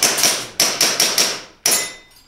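Rapid fire from an airsoft pistol, a Springfield XD(M) replica: about seven sharp cracks in under two seconds, the last coming after a short pause.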